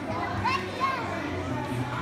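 A crowd of young children's voices, chattering and calling out between sung lines, with two short high-pitched calls about half a second and one second in.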